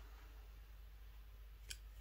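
Near silence: faint room tone, with one brief, faint click near the end from the metal multi-tool being handled.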